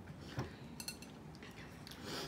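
Faint tabletop handling sounds against quiet room tone: a light knock about half a second in and a few soft clicks of tableware shortly after, as mini marshmallows are sorted by hand on the table.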